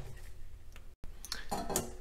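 Faint clinks and handling noise of kitchen utensils and dishes, dropping to dead silence for an instant about a second in, then a few light clicks.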